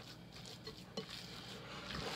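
A hand squishing and kneading raw ground-chicken meatloaf mixture in a bowl, faint, with a couple of soft taps of the bowl near the middle.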